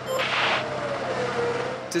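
Formula 1 car's turbocharged V6 engine at speed on the straight, its note falling steadily as it goes by.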